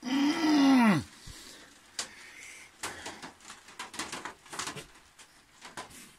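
A man's drawn-out anguished groan lasting about a second, rising slightly in pitch and then falling away: dismay at finding he has run out of cider. Faint clicks and handling noises follow.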